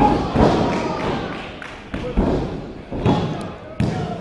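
Wrestlers' bodies hitting the canvas of a wrestling ring: about five separate thuds as a fighter is swept off his feet and pinned, the later ones fitting the referee's hand slapping the mat for the pin count.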